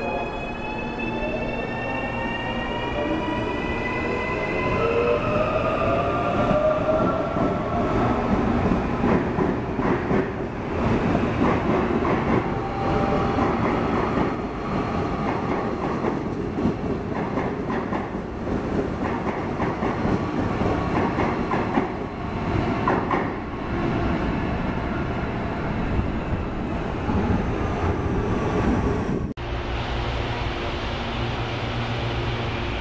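Suburban electric trains at a station platform: the traction motors of a CPTM series 8500 unit whine in several tones, rising in pitch as it accelerates, then a loud steady rumble of wheels on rails as a train runs along the platform. The sound cuts off abruptly about a second before the end.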